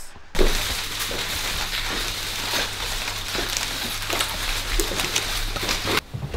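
A steady crackling hiss over a low hum, starting abruptly a moment in and cutting off suddenly at the end.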